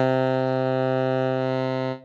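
Sampled tenor saxophone from Impact Soundworks' Straight Ahead Jazz Horns library, lead tenor sax patch, holding one long low note on its sustain articulation, fading slightly and cutting off just before the end.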